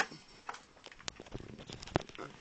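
Handling noise: a few light clicks and knocks, with a sharp click about a second in and another just before the end.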